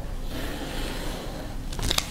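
Rotary cutter blade rolling along the edge of an acrylic quilting ruler, slicing through layered cotton fabric onto a cutting mat: a steady scraping hiss lasting over a second, then a few light clicks near the end.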